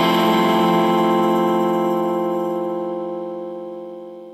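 A ska-punk band's final chord held and slowly fading out at the end of the song.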